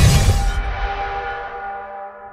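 A loud explosion boom cuts off about half a second in. It leaves a gong-like ringing tone of several steady pitches that slowly fades out.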